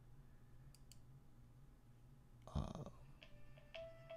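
Quiet room tone with two faint computer mouse clicks about a second in. Near the end, a mobile phone ringtone begins, with short melodic tones.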